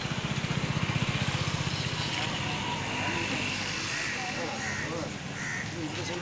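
Outdoor background of people talking quietly, over a steady low rumble that pulses rapidly during the first couple of seconds.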